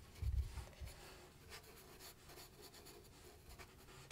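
Faint strokes of a watercolour brush flicked across dry paper, with a soft low thump about half a second in.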